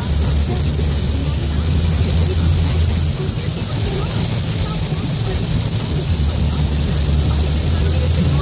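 Steady road noise heard inside a Dodge Charger driving through heavy rain: a low rumble of the car at speed under a constant hiss of tyres on the flooded road and rain on the windscreen.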